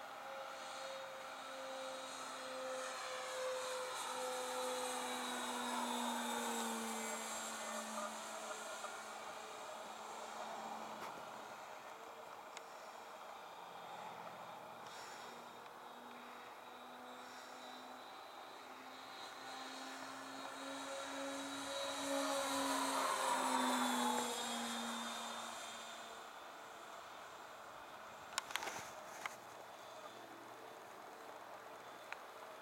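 Hangar 9 Twin Otter radio-controlled scale model flying two passes, its two motors humming with a steady tone that grows louder as it approaches and drops in pitch as it goes by, about six seconds in and again around twenty-four seconds. A few sharp clicks near the end.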